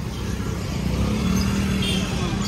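Low rumble of street traffic, with a motor vehicle engine running close by and a steady low hum in the second second.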